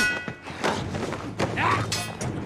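TV sword-fight soundtrack: a few heavy thuds and impacts with short shouted or grunting voices, under background music.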